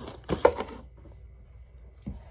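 A short vocal sound with a sharp click about half a second in, then quiet room tone with a faint steady high-pitched tone.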